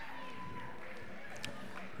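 Audience applause, faint and steady, heard from the room.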